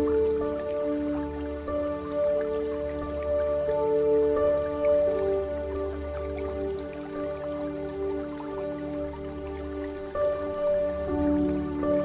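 Slow ambient relaxation music: long held notes over a low drone, the notes changing every few seconds, with water dripping throughout.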